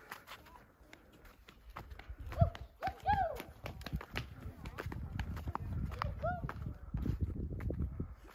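Footsteps scuffing and tapping on bare sandstone slickrock at a quick walk, with a short laugh about two and a half seconds in and a low rumble through the second half.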